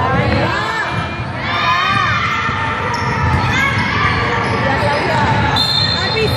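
Youth basketball game in a gym: a basketball bouncing, sneakers squeaking on the hardwood floor, and players calling out, all echoing in the hall. Near the end comes a short, steady, high-pitched whistle blast, fitting a referee's whistle.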